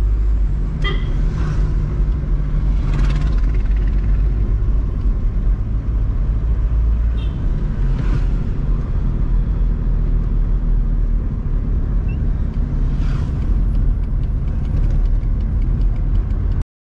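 Steady low engine and road rumble inside the cabin of a 1981 Hindustan Ambassador being driven, with a few brief swishes of noise along the way.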